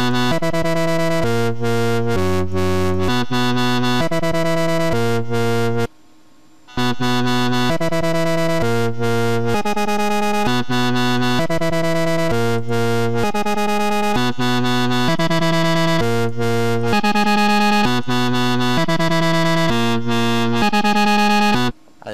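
Synthesizer pattern from FL Studio's 3xOSC plugin playing back: a run of bright, buzzy notes, each changing after about half a second. It stops briefly about six seconds in, when the loop restarts, and then carries on to near the end.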